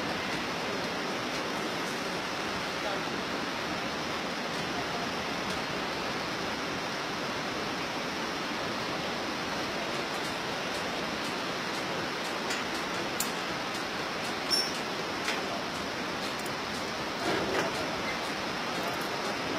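Steady rushing of the Bhote Koshi river in the gorge far below, an even hiss-like noise with a few faint clicks in the second half.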